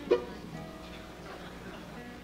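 An acoustic string instrument is plucked sharply just after the start, and its notes ring on faintly.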